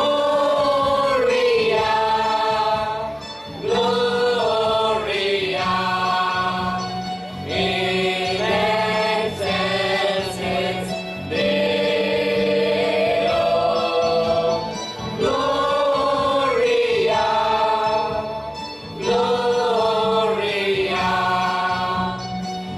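Mixed choir of men and women singing a Christmas carol in harmony, in sustained phrases of a few seconds with brief breaks between them.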